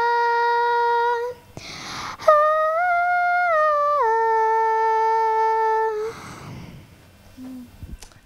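A young girl singing a cappella, the final wordless held notes of a French song. One long note ends about a second in; after a breath comes a higher note that steps down and is held until about six seconds in.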